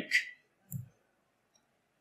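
A single short, soft click about three-quarters of a second in, just after the last sound of a spoken word.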